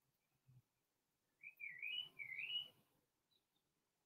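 Faint bird chirp: a short warbling call that rises and falls in two quick phrases, about a second and a half in, over near silence.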